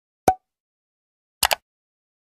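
Two brief sharp pops in dead silence: a single short plop with a touch of pitch about a quarter second in, then a quick double click about a second and a half in.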